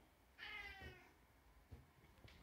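A cat meowing once, a short faint call that falls slightly in pitch.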